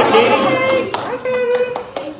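Hand claps, with a few sharp single claps in the second half, over a voice holding a steady note.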